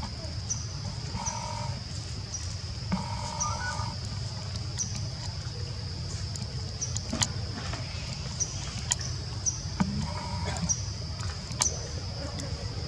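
Outdoor tree-canopy ambience: a steady high-pitched buzz with a short chirp repeating about once a second, over a steady low rumble. A couple of short calls stand out about a second in and again around three seconds in.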